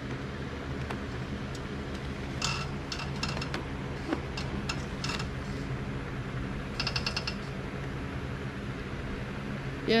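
Steady low hum of an electric box fan running off a portable power station, with a few sharp plastic clicks and a quick rattle of ticks from a charging cable being plugged into a flashlight and the flashlight handled.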